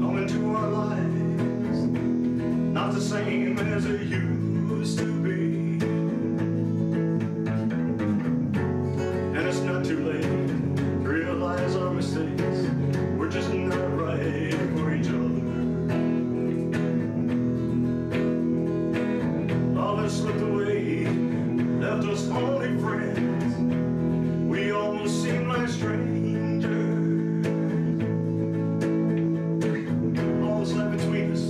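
Hollow-body electric guitar being played, chords ringing on with regular picked strokes, while a man sings along.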